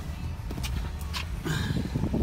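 Handling noise from a phone being moved around a car's cabin: two sharp clicks, then rustling that builds toward the end, over a low steady rumble.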